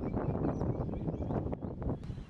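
Wind rumbling on the microphone outdoors, a rough low noise with no clear strike or voice in it.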